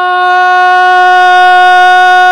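A man's voice holding one long, steady sung note, unaccompanied, as he recites a noha (Shia mourning elegy).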